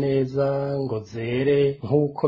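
Speech only: a man talking, his vowels drawn out at a fairly level pitch.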